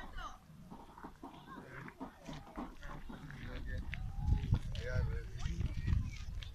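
Distant voices of several people talking and calling out, not close to the microphone, over a low rumble that grows louder about two thirds of the way through.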